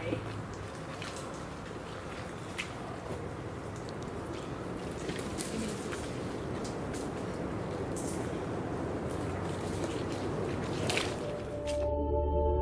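Outdoor ambience among mangrove trees: a steady noise with scattered light clicks and snaps as someone moves through the woodland. Just before the end it cuts abruptly to soft ambient music.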